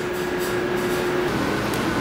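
Steady fan and ventilation noise from lab electronics racks, with a thin humming tone that stops about two-thirds of the way through.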